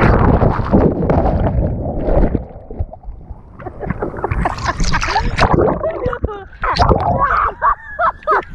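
Water rushing and splashing over an action camera riding low on a towed tube, heaviest in the first two seconds, then choppy splashes, with voices shrieking over the water in the last couple of seconds.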